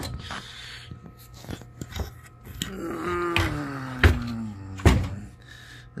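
Handling knocks from a hand-held camera being moved about, sharpest about two, four and five seconds in, over faint background music. A drawn-out tone slides down in pitch a little past the middle.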